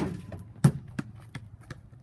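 A small basketball thumping on a hard patio: about five bounces, the first two loudest, the rest softer and coming closer together.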